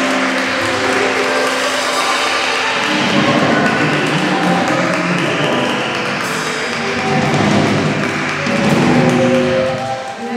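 Live band playing an Afro-Peruvian folk song, with flute and percussion.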